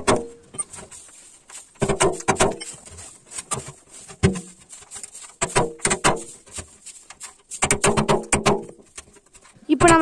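Hammer driving a nail through the thin steel wall of a 200-litre oil drum to punch a row of holes: several short runs of quick, sharp metallic taps.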